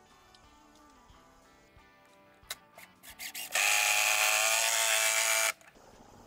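Cordless drill driving a wood screw into the bench's timber: a few short bursts on the trigger to start the screw, then a steady run of about two seconds as it is driven home, cutting off sharply.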